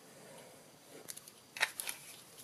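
Faint scratching of a liquid-glue bottle's tip drawn along a card panel, followed by a few light plastic clicks and knocks about one and a half seconds in as the glue bottle is put down on the desk.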